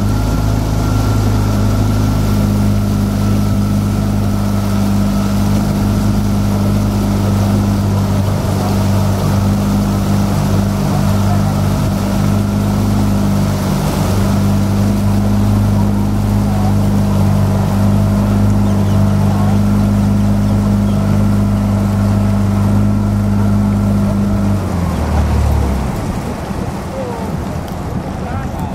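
Motorboat engine running at a steady speed, its note dropping and then stopping near the end.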